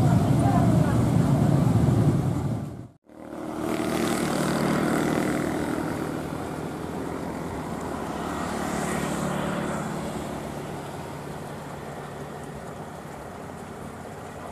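Loud low rumble with voices that cuts off abruptly about three seconds in. After the cut comes the steady low drone of a CC 201 diesel-electric locomotive engine running light some way off, swelling slightly twice.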